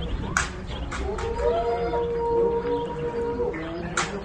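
Japanese macaques calling: one long, steady call held for over two seconds, with shorter calls overlapping it and a few sharp clicks.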